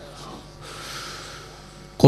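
A reciter's breath drawn in close to the microphone during a pause in Quran recitation, a hiss lasting about half a second, over a low steady hum.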